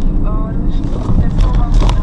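Steady low rumble of a vehicle's engine and tyres, heard from inside the cab while driving in city traffic, with brief snatches of a voice.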